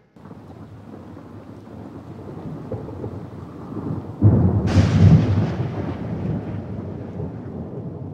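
Rain and thunder: steady rain builds, then a loud thunderclap about four seconds in, with a sharp crack half a second later, rumbles and slowly fades away.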